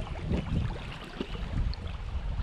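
River water sloshing and gurgling against the tubes of an inflatable pontoon boat and its trailing oar blade as the boat drifts down a shallow current, in uneven low splashes with small clicks.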